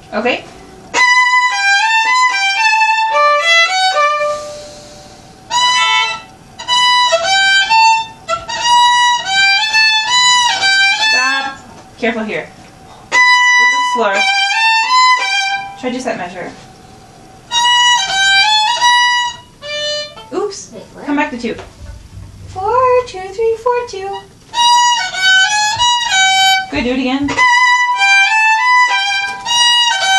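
Two violins playing a simple stepwise melody together in short phrases, stopping and starting again every few seconds, with brief talk in some of the gaps.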